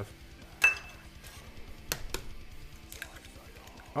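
Eggs being cracked on the rim of a stainless steel mixing bowl: a sharp tap that rings briefly about half a second in, then two more knocks about two seconds in, with a few fainter taps after.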